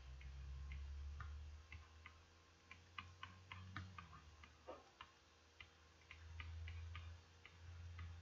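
Faint, irregular clicks and taps of a stylus on a pen tablet during handwriting, about two or three a second, over a low steady rumble.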